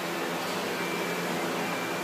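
Steady, even background noise of a large indoor arena, a fan-like hum and hiss with no distinct events.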